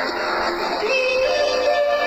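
A young boy singing into a microphone over backing music, holding long notes about a second in.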